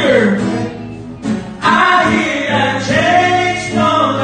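Men's voices singing a gospel worship song into microphones, accompanied by a strummed acoustic guitar. The singing eases briefly about a second in, then comes back full.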